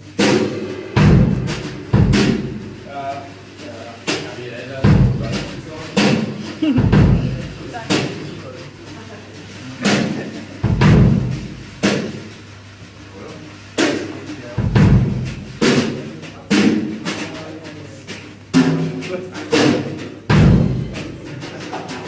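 Acoustic drum kit played live, with heavy, irregular strikes on bass drum and cymbals roughly once a second. Brief keyboard notes sound here and there between the hits.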